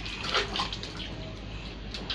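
Water splashing in a metal bucket of bath water, with a louder splash about a third of a second in and smaller splashes after.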